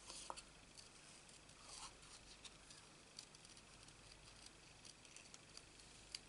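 Small scissors cutting around a stamped flower on cardstock by hand: faint, irregular snips and blade clicks, a little louder just after the start.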